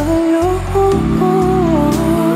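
Male vocalist singing a slow ballad live into a handheld microphone, holding and sliding between notes over instrumental accompaniment.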